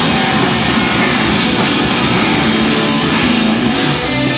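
A noise rock band playing live and loud, with electric guitars, bass guitar and a drum kit.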